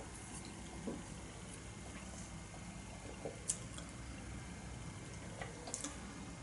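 Quiet room with a few faint clicks and a soft knock: small mouth and glass-handling sounds while a sip of beer is tasted and the glass is set back down on a cloth.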